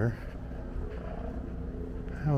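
Steady low rumble of outdoor background noise, with the tail of a man's voice right at the start.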